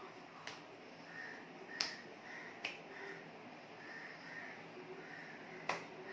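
Four short, sharp clicks from a sign-language presenter's hands striking and clapping together as he signs. The loudest come about two seconds in and near the end.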